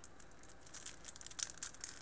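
A stack of Magic: The Gathering trading cards being handled and flicked through: a faint run of short, irregular card flicks and rustles that gets busier about a second in.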